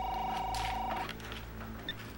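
Telephone's electronic ringer: one warbling two-tone trill lasting about a second, followed by a tiny short beep near the end as the call is answered.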